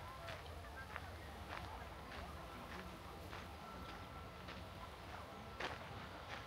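Footsteps on a packed dirt path at an even walking pace, a little under two steps a second, with faint voices of people in the distance.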